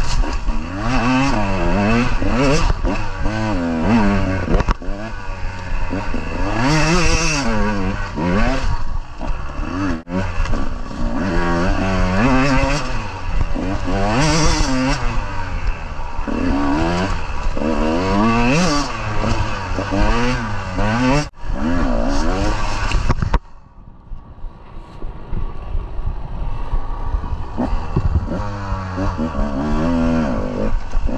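KTM 150 two-stroke dirt bike engine revving up and down over and over, its pitch rising and falling every couple of seconds. About 23 seconds in it falls suddenly much quieter, then picks up again near the end.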